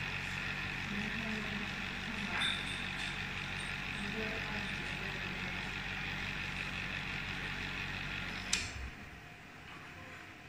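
Benchtop vortex mixer running with a small glass vial held down in its rubber cup: a steady motor hum as the vial's contents are mixed. The hum stops about eight and a half seconds in, with a click as the vial comes off the mixer.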